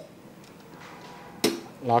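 A hand handling the small metal parts of a 1/10-scale RC truck model: one sharp click about one and a half seconds in, against quiet room tone.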